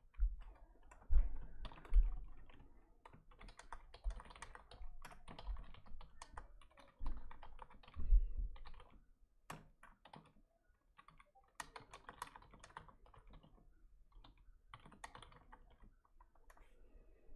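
Typing on a computer keyboard: keystrokes in bursts with a short pause past the middle, and a few dull low thumps in the first half, the loudest about one and two seconds in.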